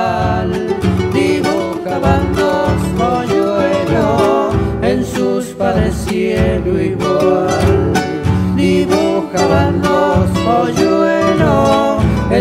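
Cuyo folk ensemble of two acoustic guitars and a guitarrón playing a cueca. The bass guitarrón and the strummed guitars keep a steady, driving rhythm under a plucked guitar melody.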